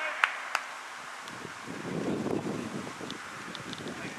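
Two sharp knocks in the first second, then wind buffeting the camera microphone from about a second and a half in.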